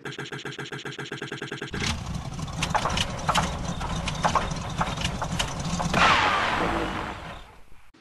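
A car engine being cranked by its starter in a rapid even chatter, catching after under two seconds and running. It swells loudest about six seconds in and then fades away.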